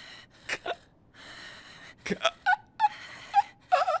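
A man's breathy laughter and gasps. There is a long breathy hiss about a second in, followed by several short, squeaky, high-pitched bursts.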